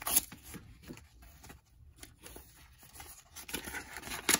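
A white mailer envelope is pulled open and handled, with one short sharp rip just after the start. After that come faint scattered rustles and crinkles, quieter in the middle and busier again near the end.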